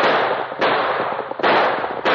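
Gunshot sound effects in a 1948 radio broadcast recording: three sharp shots in quick succession, less than a second apart, each trailing off in a long echoing decay.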